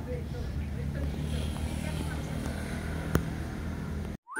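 Outdoor ambience: a steady low rumble with faint distant voices, and a single sharp click about three seconds in.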